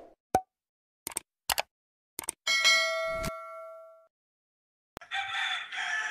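Four short clicks, then a bell-like ding that rings out and fades over about a second and a half, the sound effects of a subscribe-button intro animation. About a second before the end a rooster starts crowing.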